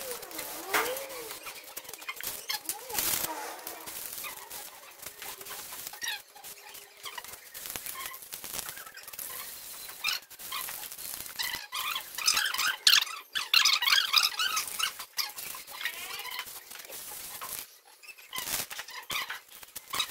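Audio played back about eight times fast: voices are turned into short, high chirps and squeaks over the hiss of an aerosol spray-paint can being sprayed on a bicycle frame.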